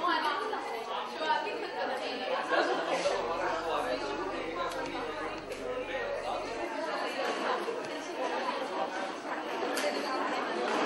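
Speech: a woman and then a man talking into an interviewer's microphone, with the chatter of other people behind.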